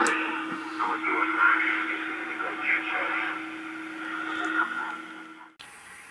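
President Grant SSB CB radio's speaker playing what it receives: hiss with faint, thin voices from the channel over a steady low hum. The sound cuts off abruptly near the end.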